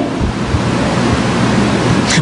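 Air rushing onto a close microphone: a steady, loud hiss of noise lasting about two seconds, with a low rumble underneath.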